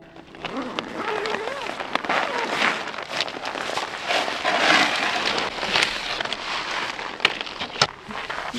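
A nylon snowboard bag being unzipped and opened, and the snowboard and its bindings handled inside it: rustling fabric with scrapes and small clicks, and two sharp clicks near the end.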